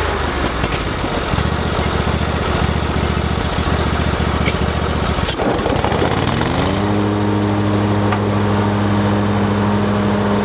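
Ferris Z3X stand-on mower's V-twin engine running unevenly at low speed, with a sharp click about five seconds in, then revving up smoothly to a steady higher speed about a second later.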